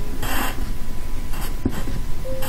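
Pencil lead scratching on paper as two short strokes of a Chinese character are written, the first just after the start and a shorter one about one and a half seconds in.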